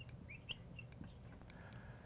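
Faint squeaks of a marker writing on a glass lightboard: a few short squeaks that glide in pitch in the first half second, with a small tap, then quiet.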